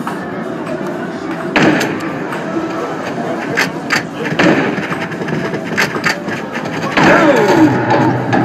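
Arcade light-gun hunting game: a handful of sharp gunshot effects from the cabinet's speakers, spread over several seconds, above a steady wash of arcade music and game noise. A voice with a bending pitch comes in near the end.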